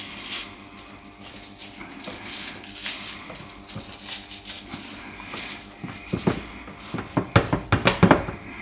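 Hands spreading and pressing grilled kebab meat slices into a stainless steel baking tray, a soft rustling handling sound. Near the end comes a quick run of sharp knocks and clatters as the metal tray is shifted and pressed on the counter.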